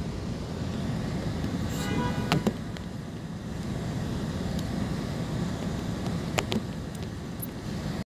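A steady low rumble runs throughout, with a few sharp clicks and rustles as a folder of paperwork is handled, twice in quick pairs.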